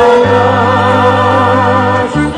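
Macedonian folk serenade played by a small band: a voice holds one long note with a wavering vibrato over a steady sustained bass note and accompaniment.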